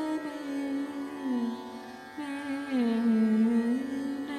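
Indian classical female voice singing slow phrases that glide down and back up, with a Turkish electric saz accompanying under held notes.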